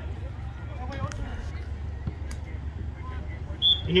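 Faint, distant voices of players on an outdoor soccer field over a steady low rumble, with a couple of sharp clicks; a public-address voice begins near the end.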